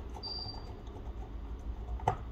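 Faint handling noise from a disassembled phone being worked by hand: light taps and rubbing of fingertips on its small metal parts over a low steady hum, with a brief thin high squeak about a quarter second in.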